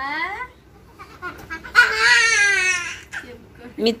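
A young child cries out: a short rising cry at the start, then one long wail with a wavering pitch about two seconds in.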